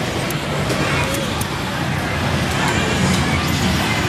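Busy arcade din: a steady wash of crowd chatter and game-machine noise, with faint voices in the background and a few light clicks.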